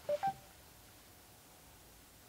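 Mercedes MBUX voice assistant sounding two short electronic beeps, the second higher than the first, just after a spoken command: its signal that it has taken the request. Low, quiet cabin hum follows.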